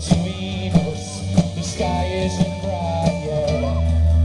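Live rock band playing a stretch between sung verses: drum strokes and held melody notes. The deep bass drops out at the start and comes back at the end.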